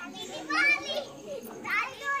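Children's voices in the background: two short, high-pitched calls, one about half a second in and one near the end.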